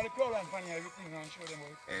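A man's voice in drawn-out, sing-song tones, some notes held, quieter than the talk around it.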